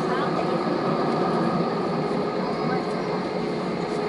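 Airbus A320 cabin noise while taxiing, heard from a window seat over the wing: a steady hum of the jet engines at low thrust with the airframe's rumble, and faint passenger voices underneath.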